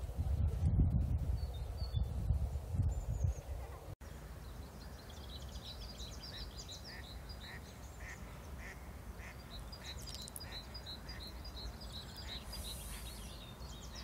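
Low rumbling noise for about four seconds, then, after a cut, birds calling by the river: a steady run of short high calls, about one and a half a second, with quicker chirps above them.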